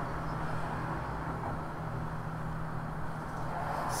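Steady low background hum with a faint even hiss, no distinct events.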